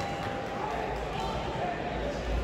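Spectators' voices in the hall with dull thuds from the boxers in the ring, their punches and footwork on the canvas.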